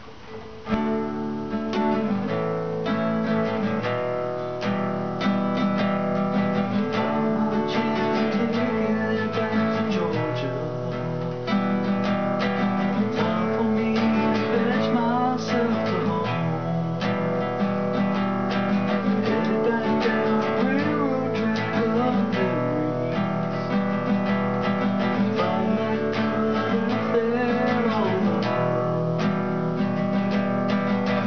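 Nylon-string classical guitar being played, starting about a second in and running on steadily: chords and single notes plucked in a continuous tune.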